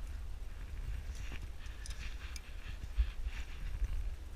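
A rock climber's hands and shoes scuffing and tapping on limestone as they move from hold to hold, with a few sharp ticks in the middle and a steady low rumble underneath.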